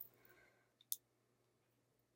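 Near silence, with a single short, faint click just under a second in.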